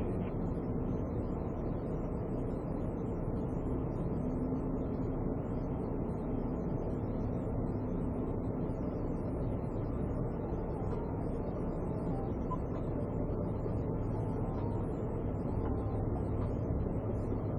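Steady low vehicle rumble heard inside a patrol car's cabin, with no sudden events.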